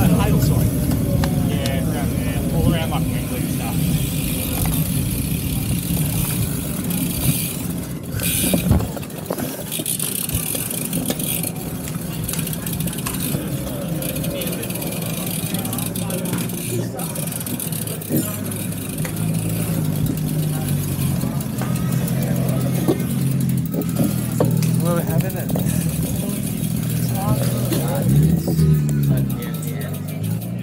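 Wind and road noise rushing over the action camera's microphone while riding a road bike in a group, easing off about nine seconds in as the bike slows to a stop. After that, background music with indistinct voices chatting.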